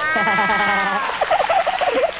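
A drawn-out vocal exclamation of surprise whose pitch rises and then falls over about a second, followed by a shorter, wavering vocal sound.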